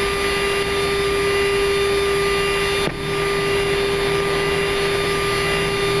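Flight-deck noise of a Boeing jet airliner on its takeoff roll with its engines at takeoff thrust: a loud, steady rush with a steady hum running through it. A brief knock comes about three seconds in.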